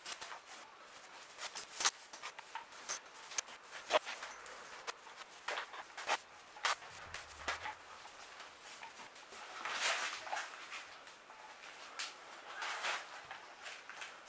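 Glue being spread by hand along wooden mast staves: irregular light scrapes and clicks, with a longer, louder scrape about ten seconds in.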